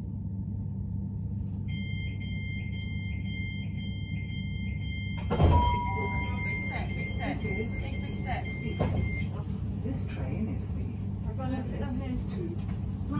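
Door warning beeps of a British Rail Class 387 Electrostar electric train, a two-tone beep pulsing about twice a second, then a sudden loud burst of noise about five seconds in as the doors work, with the tone held steady for a few seconds after. Under it the steady hum of the train standing at the platform, and voices in the second half.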